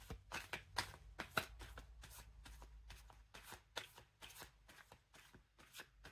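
A deck of cards being shuffled by hand: a quick run of soft card clicks and slaps, several a second, that thins out near the end.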